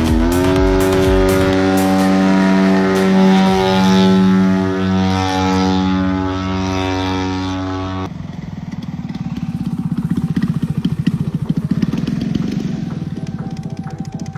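Radio-controlled biplane's engine running at high power, its pitch rising just after the start and then holding steady in flight. About eight seconds in it gives way to a lower, rapid, rough pulsing of the engine throttled back as the plane lands and rolls on the grass.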